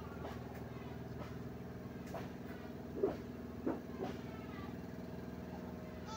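A steady low machine hum in the background, with faint strokes of a pen writing on paper. Two brief faint blips come about three seconds and three and a half seconds in.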